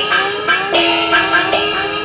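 Traditional Taiwanese temple-procession percussion: small hand cymbals and drumsticks struck in a quick, steady beat, with ringing metal tones that glide upward after each stroke, about three a second.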